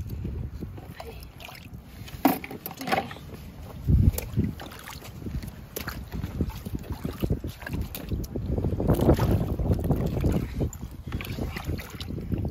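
Shallow rock-pool water sloshing and splashing as gloved hands feel under stones, with irregular knocks of rock and shell and wind rumbling on the microphone. A heavier thump comes about four seconds in.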